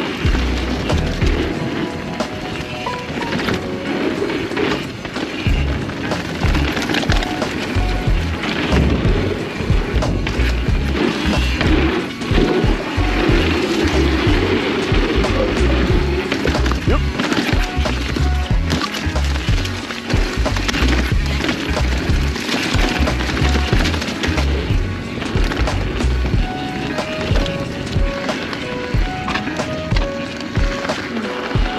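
Background music over the rumble and clatter of a mountain bike's tyres rolling fast over dirt and wooden boardwalk.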